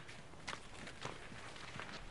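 Faint footsteps on packed earth: a few soft, unevenly spaced steps about half a second apart over a light outdoor background hiss.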